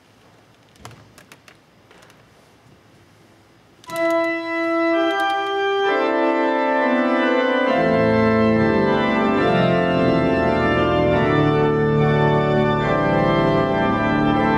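Organ music begins about four seconds in: a few sustained upper notes first, then fuller chords, with a deep pedal bass entering about halfway through. Before the organ starts there are only a few faint clicks over a quiet room.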